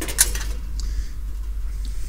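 Thin stainless-steel parts of a smokeless charcoal grill, its perforated charcoal basket and lid, clinking as they are handled and set down: a short clatter at the start, then a couple of light taps. A steady low rumble lies underneath.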